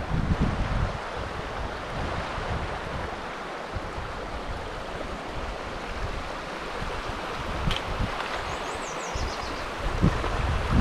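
Shallow creek flowing over rocks and pebbles, a steady rushing, with wind buffeting the microphone in the first second. A brief high, descending trill sounds near the end.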